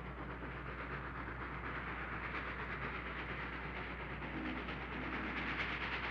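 Steam-hauled freight train running on the rails: a steady rushing noise with a fast, even beat.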